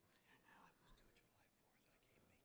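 Near silence, with faint, indistinct low talk among the panelists picked up by the table microphones.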